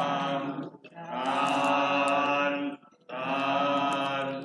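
Buddhist chanting in long, steady held tones, drawn out in phrases of about two seconds with short breaths just before one second in and about three seconds in.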